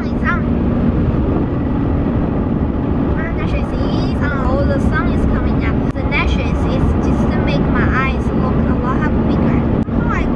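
Steady low road and engine rumble heard inside the cabin of a moving car. A voice is heard at moments over it.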